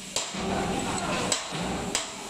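Sharp knocks at a steady pace, about one every two-thirds of a second, like hammering on metal, over a low rumbling handling noise.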